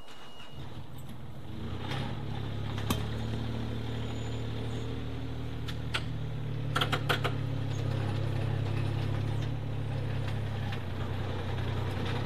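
Small site dumper's engine revving up about two seconds in and then running steadily as the dumper, loaded with soil, drives forward. A few sharp clanks come through over it.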